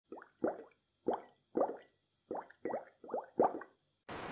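Water plop sound effect: about nine short bloops, each rising quickly in pitch, coming at irregular intervals.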